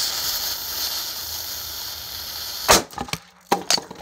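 A burning fuse hisses and sputters steadily. About two and a half seconds in, a small blasting cap of silver nitrotetrazolate goes off with a single sharp crack, followed by a few short clicks and knocks.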